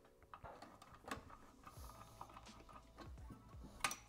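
Faint small metal clicks and scrapes of a screwdriver tightening the screw that holds a piezo igniter's ceramic tip on a gas stove burner, with a sharper click about a second in and another near the end.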